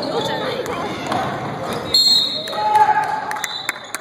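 A basketball game on a hardwood gym floor: the ball bouncing, sharp knocks of play and short high squeaks, under the voices of players and the bench, with the echo of a large hall.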